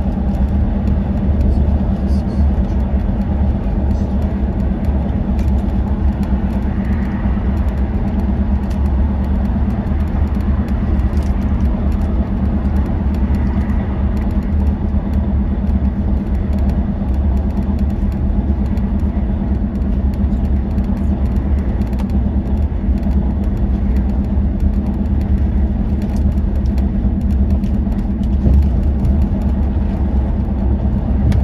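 Cabin sound of a Plaxton Elite I coach on a Volvo B11RT chassis cruising at steady motorway speed: the even low drone of its rear-mounted straight-six diesel, with tyre and road noise over it.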